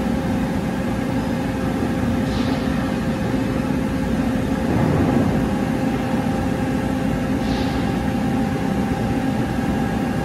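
Steady machine hum with a fan-like rush and a constant faint tone, with no distinct events.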